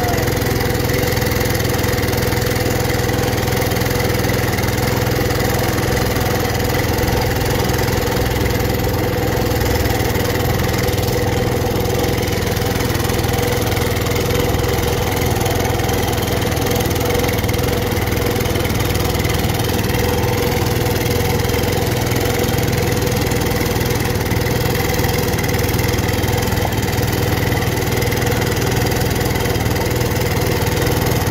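Cub Cadet 122 garden tractor engine running steadily under load as it drags a weight-transfer pulling sled, with no change in pitch or level.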